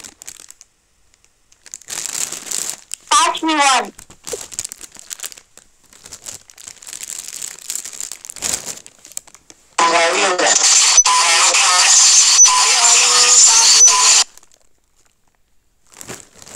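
Plastic snack packets crinkling as they are handled, in short scattered bursts, with a brief pitched voice-like glide about three seconds in. About ten seconds in comes a loud, dense stretch of about four seconds with a voice in it, the loudest thing here, which cuts off suddenly.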